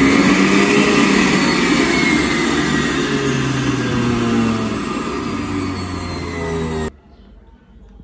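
Hannover 4-in-1 food processor's stainless-steel juice extractor running empty at speed on its pulse setting: a steady motor whine that eases slightly in level, then stops abruptly about seven seconds in.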